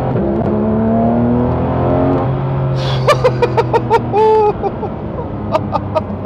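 The 4.0-litre naturally aspirated flat-six of a Porsche 911 GT3 RS (991.2), heard from inside the cabin, rising in pitch as the car accelerates for about two and a half seconds. A man then laughs briefly over the engine.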